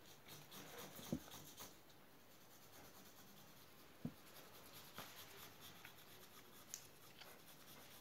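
Pencil drawing on a sheet of paper against a wall: faint scratching strokes, with a few soft knocks.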